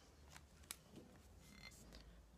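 Near silence with a few faint clicks from handling a plastic water bottle and a glass food-storage container, the sharpest click just under a second in, and a brief faint squeak near the end.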